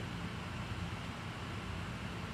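Steady low hum with a light hiss: background room tone, with no music or speech.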